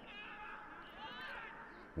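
Faint open-stadium ambience picked up from the pitch, with two short, distant high-pitched calls, one at the start and another about a second in.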